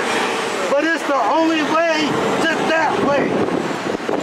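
People's voices, not clearly worded, over the steady noise of road traffic passing close by.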